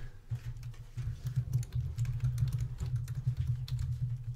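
Typing on a computer keyboard: a quick, steady run of key clicks.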